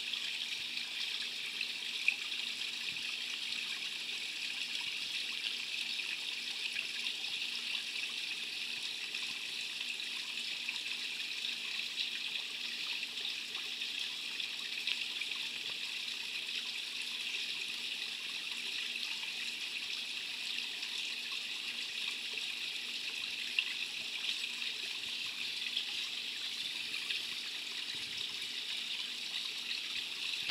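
Koi pond water trickling steadily, with a couple of brief faint ticks about two seconds in and later on.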